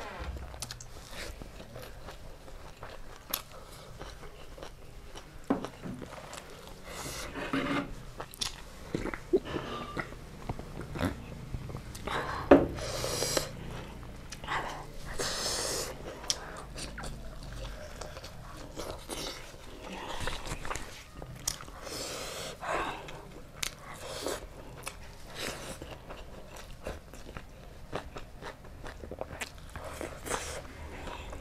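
Close-miked eating sounds of a person eating rice and chicken curry by hand: chewing, lip smacks and many small wet clicks scattered throughout, with a few louder mouth noises about halfway through.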